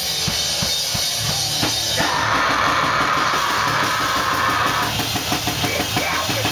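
Live heavy rock band playing loud, with the drum kit to the fore: bass drum, snare and cymbals in a fast rhythm under electric guitar. About two seconds in, a sustained high wash of sound joins the drums for a few seconds.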